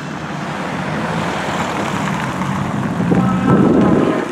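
Ford Mustang Mach 1's V8 engine running at low revs as the car rolls slowly past, getting louder toward the end.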